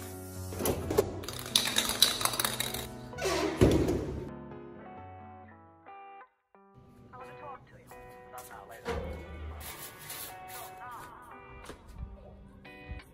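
Background music with a beat, overlaid for the first four seconds by bursts of hissing from an aerosol air-freshener can being sprayed. The music cuts out briefly about six seconds in, then carries on.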